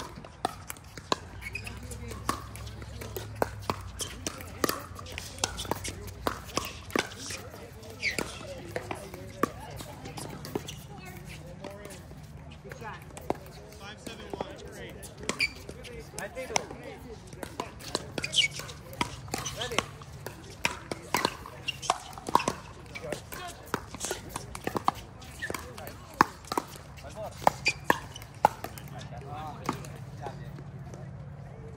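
Pickleball paddles hitting a plastic pickleball during rallies: many sharp pops at irregular intervals.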